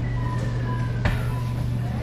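Claw machine running during play: a steady low hum, a thin whine slowly falling in pitch that stops with a click about a second in, and short electronic beeps.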